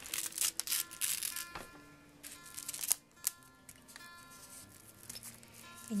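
Soft acoustic guitar background music, with the rustle and crinkle of clear packing tape on a thin paper napkin as it is handled and smoothed down by hand. The rustling is heaviest in the first second, with another short burst around three seconds in.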